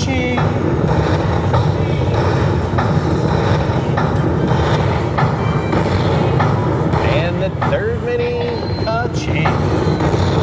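Buffalo Link slot machine's bonus music and payout sounds as credit values are added to the win meter, over loud casino-floor noise with background chatter.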